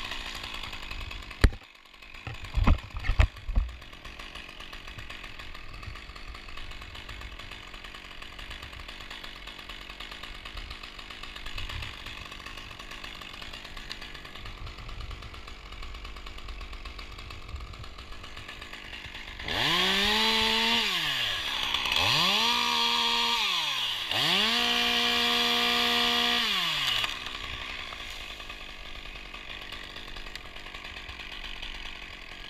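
Small top-handle chainsaw ticking over quietly, then revved up three times in quick succession: each time the engine climbs to full speed, holds for about two seconds and drops back. A few sharp knocks come near the start.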